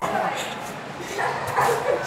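Indistinct voices of people vocalizing at a moderate level, with a low steady hum behind them.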